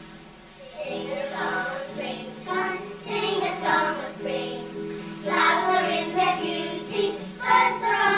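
A group of young children singing together over an instrumental accompaniment of held notes; the accompaniment is already sounding and the singing comes in about a second in.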